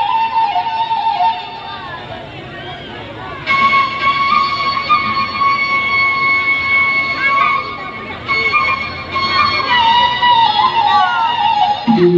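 Traditional Mandailing music for a tor-tor dance: a held melody line with wavering, bending pitch over a dense background. It drops quieter for a couple of seconds, then comes back louder and steadier about three and a half seconds in.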